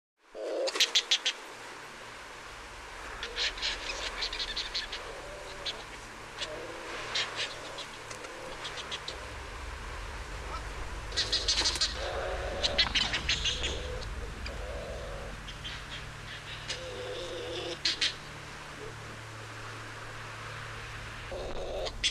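Barau's petrels calling in repeated bursts of rapid, pulsed notes, loudest about a second in and again around the middle, over a steady low rumble.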